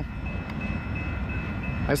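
Union Pacific mixed freight of tank cars and covered hoppers rolling along the track as it gets under way, a steady low rumble with a faint thin high tone above it.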